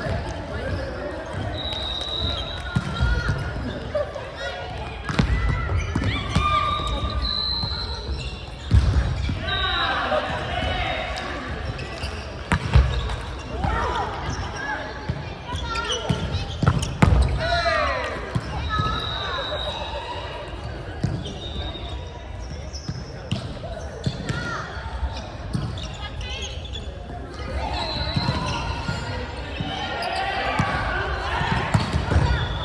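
Indoor volleyball play in a large gym: players calling out, a few sharp thuds of the ball being struck, and short squeals of sneakers on the court floor, all echoing in the hall.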